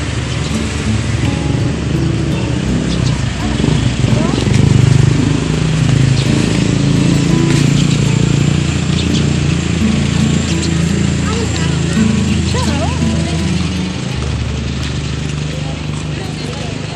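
Background music with a held low bass line that changes pitch in steps, over faint outdoor voices.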